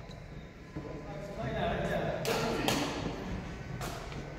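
Three sharp hits in a large sports hall, about two, two and a half and nearly four seconds in, over faint background voices.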